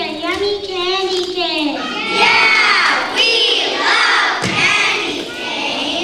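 A group of children shouting together, with cheering. A single drawn-out child's voice comes first, and many voices join loudly about two seconds in.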